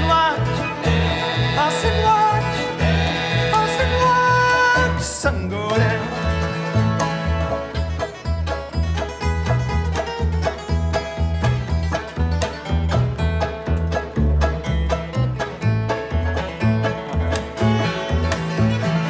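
Acoustic bluegrass string band of fiddle, banjo, upright bass and acoustic guitar playing. A sung line trails off in the first few seconds, and the rest is an instrumental passage of quick plucked banjo notes over a walking upright bass, with fiddle and strummed guitar.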